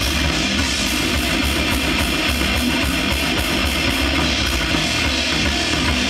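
A live metal band playing loudly: distorted electric guitar, bass guitar and drum kit in a dense, unbroken wall of sound.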